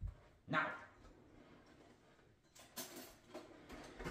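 A steel cleaver set down on a wooden cutting board with a short knock, followed by a few faint handling noises on the board.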